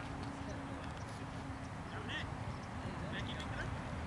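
Open-air background: a steady low rumble with faint distant voices, and a few short high chirps about two seconds in and again around three seconds.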